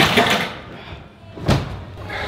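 Round-off-entry vault: a loud impact of the springboard and hands on the vault table at the start, then a single sharp thud about a second and a half in as the gymnast lands on the mat.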